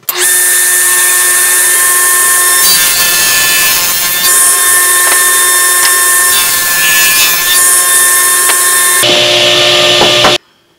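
Table saw running and ripping the edges of 2x4 pine blocks square against the fence, a steady whine with cutting noise that varies as each block is fed through. The sound changes about nine seconds in and cuts off abruptly at the end.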